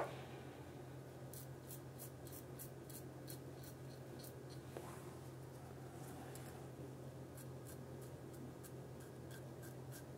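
Faint scraping of a QSHAVE double-edge safety razor's blade cutting lathered stubble. It comes in two runs of short strokes, several a second, over a low steady hum.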